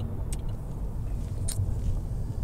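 Steady low road rumble inside a moving car's cabin, with two faint ticks.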